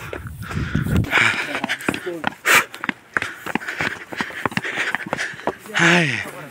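People's voices in untranscribed talk, with footsteps scuffing and tapping on stone steps as they walk.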